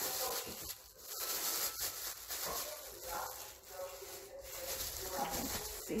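Thin plastic bag crinkling and rustling as it is handled and unwrapped from a drink bottle, with faint voices behind it.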